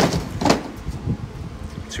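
Bricks tipped from a plastic bucket onto the pile in a tipper truck's bed, clattering as they land: a loud crash at the start and another about half a second in, then quieter.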